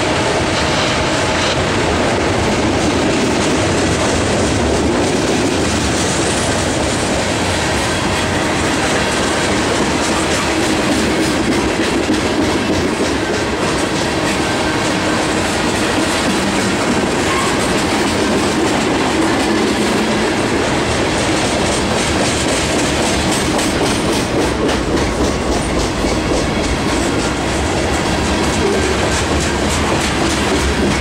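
Freight train of tank cars and covered hoppers rolling past close by: a steady, loud rumble of steel wheels on rail, with clickety-clack as the wheels cross the rail joints.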